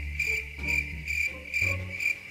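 Cricket chirping sound effect in a steady high pulse, about three chirps a second, the stock 'awkward silence' cue, over faint low background music.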